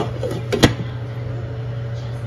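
A glass pot lid with a metal rim is set down onto a frying pan: a couple of sharp clinks about half a second in, over a steady low hum.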